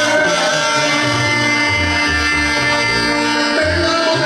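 A live band playing Latin dance music: held horn notes over a pulsing bass line, loud and steady.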